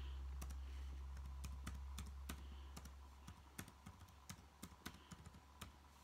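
Faint, irregular light clicks and taps, a few a second, over a low hum that fades out about halfway through.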